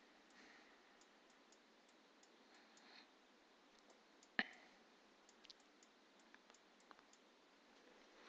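Near silence: faint scattered clicks, with one sharper click a little past four seconds in.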